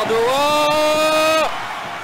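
A man's voice holding one long, drawn-out excited call for about a second and a half, then breaking off.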